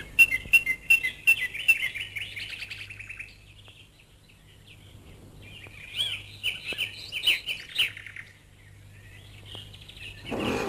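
A bird chirping in two bouts of quick, high twittering calls, each two to three seconds long, with a quiet gap of about three seconds between them.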